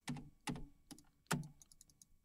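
Keys being pressed on a computer keyboard: a handful of separate clacks, three louder ones spread over the first second and a half, then a few lighter taps near the end.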